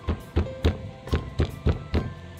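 Stone pestle pounding chillies, shallots and garlic in a stone mortar, about three sharp thuds a second, over steady background music.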